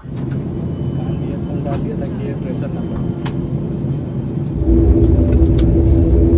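Airliner engine noise heard inside the passenger cabin: a steady rumble that grows louder about four and a half seconds in, when a droning tone joins it.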